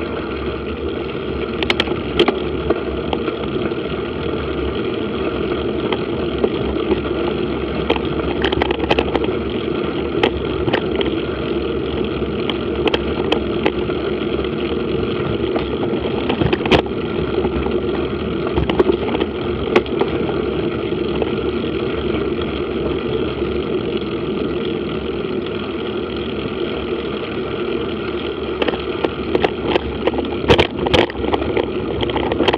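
Mountain bike rolling along a dirt track: steady rumble of tyres on the packed earth and gravel with wind, broken by scattered short clicks and knocks from the bike jolting over the surface.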